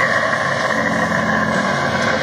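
A long, held harsh deathcore scream into a cupped microphone, over heavy metal backing music.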